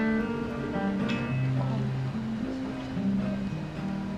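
Acoustic guitar being plucked, notes and chords ringing out and changing every second or so.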